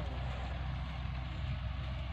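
A tractor's diesel engine idling steadily, a low even hum.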